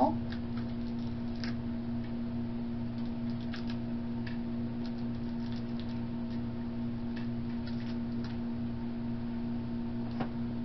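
A steady electrical hum throughout, with faint, scattered light clicks of tiny plastic toy pieces being handled and set down on a desk.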